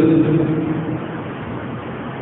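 A man's voice drawing out a held vowel that stops just after the start, then a pause filled by steady background noise and hum.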